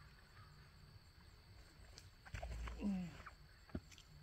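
Quiet outdoor background. About halfway through comes a short drawn-out vocal sound from a person. Near the end a single sharp knock is heard as the thrown golf disc lands near the basket.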